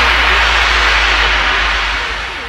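A loud, sustained white-noise wash, a DJ remix transition effect, hissing over a low steady bass drone with the drums dropped out; it starts to fade near the end.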